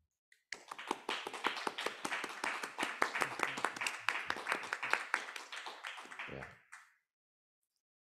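Audience applauding, starting about half a second in and dying away about a second before the end.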